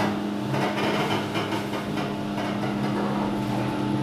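Passenger lift running: a steady electric hum with several held tones, with an uneven rustling noise over the first two seconds.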